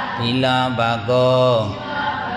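A Buddhist monk chanting Pali text in a slow recitation tone: a low male voice holding steady pitches, a short phrase followed by one long held note.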